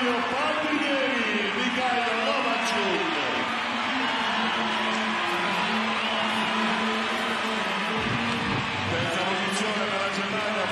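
A large crowd of spectators in the stands: a steady din of many voices cheering on the swimmers.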